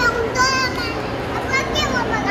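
High-pitched child's voice calling out briefly twice, over the steady babble of a crowded food court.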